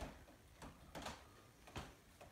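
Near silence: quiet room tone with a few faint, brief clicks or taps, about four in two seconds.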